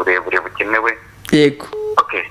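A caller's voice coming over a mobile phone's speaker held up to a studio microphone, with a short steady phone tone near the end.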